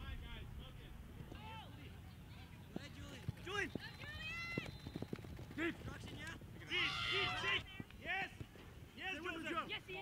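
Shouts and calls of soccer players and sideline spectators carrying across an open field, with a long drawn-out shout about four seconds in and the loudest burst of calling about seven seconds in, over a steady low rumble.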